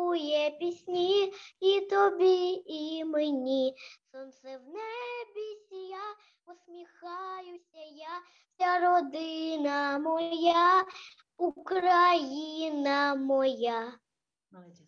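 A young girl singing solo and unaccompanied over a video call: long held notes with vibrato, in phrases broken by short pauses.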